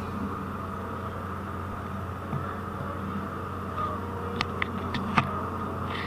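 A ferry's engines and machinery keep up a steady, low humming drone on the passenger deck. A few short sharp clicks or knocks fall close together about four to five seconds in.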